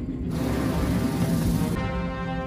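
A spaceship setting down: a loud rush of thruster noise starts about a third of a second in and cuts off sharply near the end, over the film's orchestral score.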